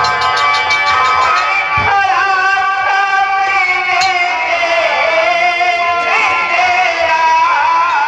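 Live Nautanki folk-theatre singing over a PA: one voice holding long, wavering notes that slide up and down, with a low thump about two seconds in.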